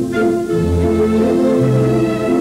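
Orchestral background music led by bowed strings: held chords over a bass line that changes note about once a second.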